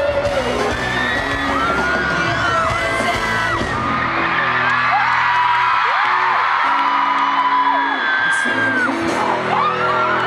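Live pop concert heard from within the crowd: the band's amplified music and singing mixed with fans close by singing and screaming along. The bass drops away for a few seconds in the middle and then comes back.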